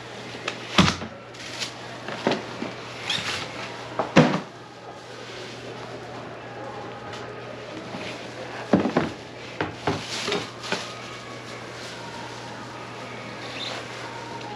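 Cardboard shoe boxes and sneakers being handled on a shop counter: a series of sharp knocks and thumps as boxes are closed, moved and stacked, the loudest about a second in and about four seconds in, with more around the ninth to eleventh second.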